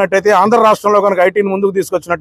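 Only speech: a man talking continuously, with no other sound.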